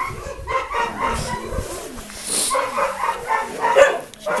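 Dog barking in a quick run of short, high yelps.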